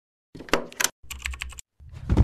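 Rapid sharp clicks like keys being typed, in two short bursts, as a sound effect; near the end a deeper sound swells in.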